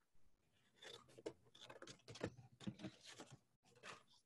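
Faint, irregular snips and paper rustling of small plastic-handled scissors cutting construction paper.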